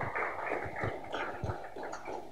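Audience applauding: a steady round of many hands clapping.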